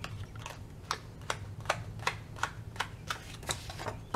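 Paper planner pages being pressed onto the disc rings of a disc-bound Happy Planner, each hole snapping onto a disc with a sharp click, about ten clicks in a steady run of two or three a second.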